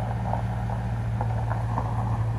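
A steady, low machine hum that does not change in pitch or level.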